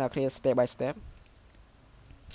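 A couple of quick, faint computer mouse clicks a little over a second in, after a short stretch of a man's speech.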